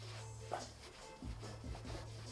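Microfiber towel wiping over a painted car panel: a few soft rubbing strokes while buffing off a freshly applied graphene coating. Faint background music and a low steady hum run underneath.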